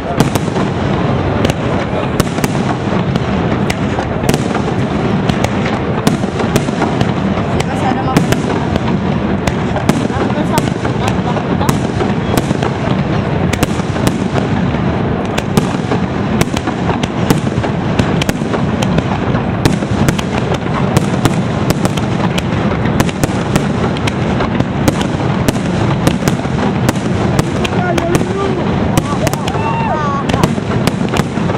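Aerial fireworks display by Pirotecnia Valenciana: a dense, unbroken barrage of shell bursts and crackling, with sharp bangs several times a second.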